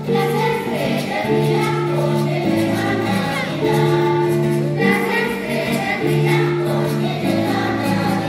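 Children's choir singing together in long held notes, the phrases changing pitch about every second.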